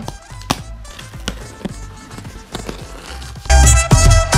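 Scattered knocks and rustles of a cardboard box and its plastic wrapping being handled and opened. About three and a half seconds in, loud background music with a beat starts.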